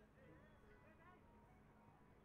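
Near silence, with only faint, indistinct sound in the background.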